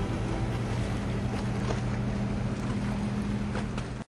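A boat's engine running steadily at a low hum, with wind and water noise over it. The sound cuts off abruptly at the end.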